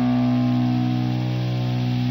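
A single sustained chord of distorted electric guitar, held and ringing out steadily at the close of a rock song, its higher overtones slowly dying away.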